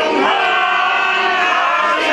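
A large crowd singing a revolutionary song together, loudly, with long held notes in the middle.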